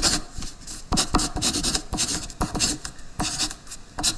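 Writing sound: a pen scratching across paper in quick, irregular strokes.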